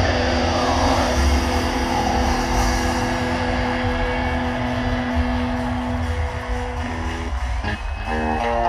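Heavy metal band playing live: a long held electric guitar chord rings over drums and the band's noise. The chord breaks off about seven seconds in, leaving a brief dip before the next guitar part.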